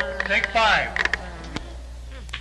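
Studio session tape: brief talk from people in the room, mostly in the first second, over a steady low mains hum. A few clicks follow around the middle.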